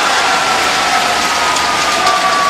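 Large arena crowd cheering and applauding as a badminton point is won, with a long held note slowly sinking in pitch over the dense clapping.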